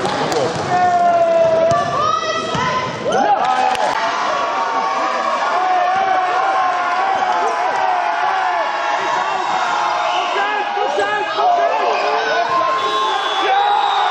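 Voices shouting and calling over one another in a large hall, with a basketball bouncing on the gym floor during play.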